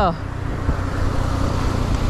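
Steady rumble of wind and road noise on a handlebar camera while riding a bicycle, as a motorcycle sidecar tricycle passes close by.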